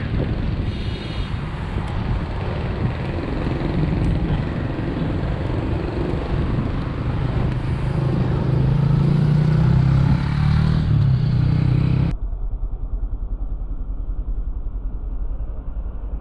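Wind buffeting the microphone while cycling on a city street, with road traffic and a low rumble that is loudest a little past the middle. About twelve seconds in, the sound turns abruptly muffled.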